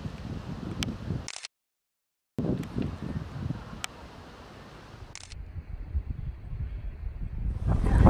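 Wind buffeting the camera microphone as an uneven low rumble, broken by about a second of dead silence where clips are spliced, with a few faint clicks.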